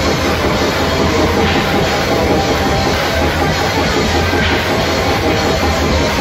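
Heavy metal band playing live at full volume: distorted electric guitars, bass and a drum kit in a dense, steady wall of sound, the drums hitting fast and continuously.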